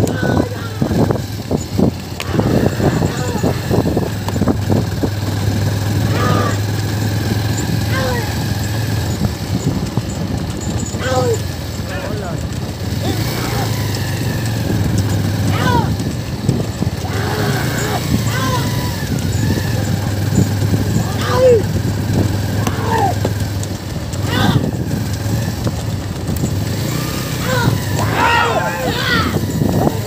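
A wooden bullock cart rolling on a dirt track, its wheels and boards rumbling and rattling continuously, over a steady low engine hum. Short shouts are scattered throughout.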